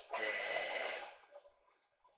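A man breathing out audibly through his nose, a snort-like breath lasting about a second.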